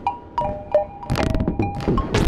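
Eurorack modular synthesizer playing an improvised experimental piece: short pitched blips at a few different pitches, each starting with a sharp click, in an irregular rhythm, with two swells of hissing noise in the second half.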